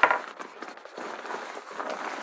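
A thin black rain cover from a tackle bag rustling and crinkling as it is pulled out and unfolded by hand, with a sharper rustle at the start.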